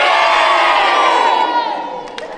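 A large group of children cheering together in one long shout that tails off near the end.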